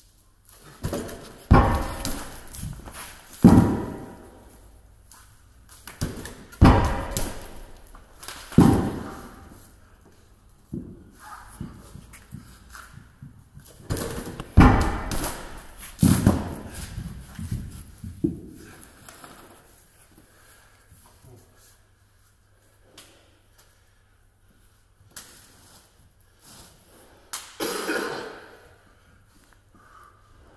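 Heavy atlas stones landing on the floor after being taken over a wooden bar: a run of loud thuds, each ringing briefly in the metal shed. About six come in the first half, fainter knocks follow, and one more thud lands near the end.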